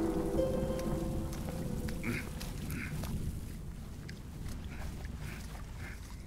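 A low rumble with held music notes fades out over the first two seconds. Then short croaking calls of night frogs repeat about every two thirds of a second, with faint clicks between them.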